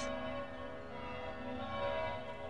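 Soft background music of sustained, ringing tones held steady, with no other sound over it.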